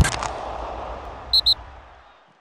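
Logo sting sound effect: a sharp hit with a low boom at the start, over a whooshing hiss, then two quick high pings near the end as it fades away.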